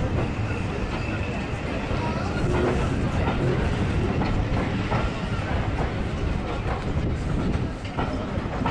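Railway coaches of a steam-hauled train rolling past at close range: a steady rumble with the wheels clicking over rail joints.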